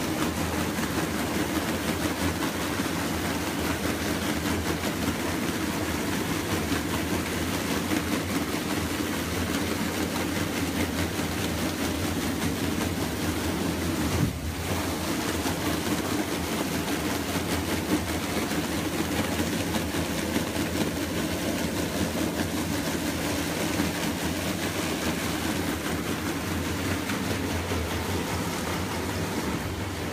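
Plastic film pre-washer tank running: a steady motor hum under a continuous wash of churning water, with one brief break in the sound about halfway through.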